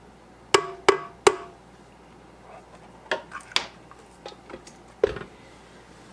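A spatula knocked three times on the rim of a stainless steel stand-mixer bowl, each knock ringing briefly, followed by softer clicks and taps. About five seconds in there is a heavier thump as the tilt-head stand mixer's head is lowered into place.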